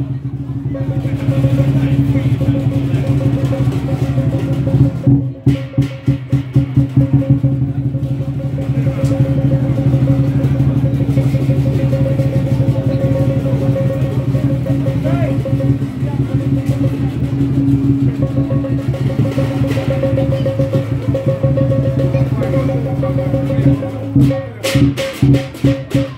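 Lion dance percussion (drum, cymbals and gong) playing a driving beat, with louder, faster passages about five seconds in and again near the end, over a steady low hum.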